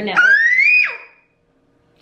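A toddler's high-pitched squeal that rises for most of a second and then drops away sharply, followed by about a second of near silence.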